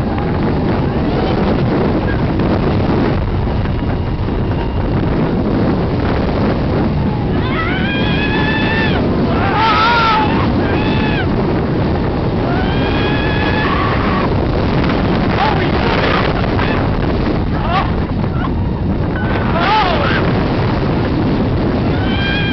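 Roller coaster ride in the front seat: loud wind rushing over the camera microphone, with riders screaming. There are several long, high screams about a third of the way in and again near the end.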